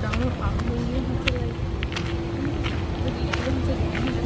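Low, indistinct talking over a steady low rumble, with a constant hum that sets in about a second and a half in and a few light clicks.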